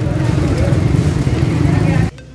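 Loud, steady din of a crowded city street: many people talking at once over the rumble of car and motorcycle engines.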